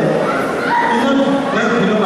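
A man speaking into a microphone over a public-address system, his voice filling a large hall.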